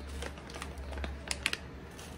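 Light clicks and rustling from a plastic spice bag being handled as a pinch of dried thyme goes into a stew pot, with two quick ticks about one and a half seconds in, over a low steady hum.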